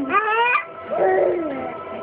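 A baby squealing: a short squeal rising sharply in pitch, then a second squeal about a second in that rises and falls away.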